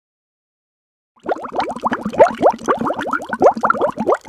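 Beluga whale calling: a rapid series of short, rising chirps and squeaks mixed with clicks, starting about a second in.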